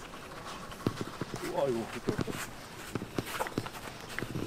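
Several short, sharp thuds of footballs being kicked on an artificial-turf pitch, with a player's voice calling out in the middle.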